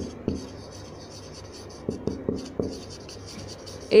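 Marker pen writing on a whiteboard: short scratchy strokes of the felt tip across the board, with a few sharp ticks about two seconds in.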